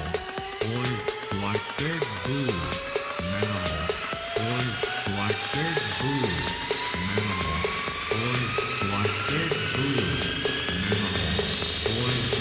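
Minimal techno DJ mix: a steady beat of kick, bass notes and regular hi-hat ticks under a long synth sweep whose whining tones climb steadily in pitch throughout.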